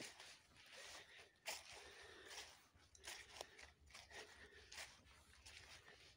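Faint footsteps crunching through leaf litter on a forest floor, an irregular run of soft crunches with a few sharper snaps.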